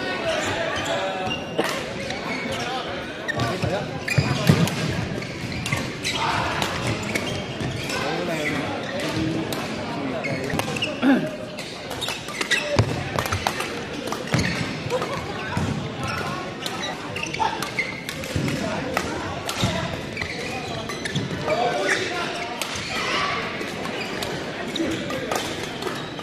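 Badminton rally in a large indoor hall: repeated sharp racket strikes on the shuttlecock and players' footfalls on the court, with voices from around the hall throughout.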